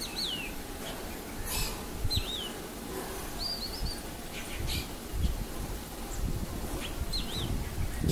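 Black drongo calling: a few short whistled notes that sweep down in pitch, spaced out over several seconds, with a short wavering phrase near the middle.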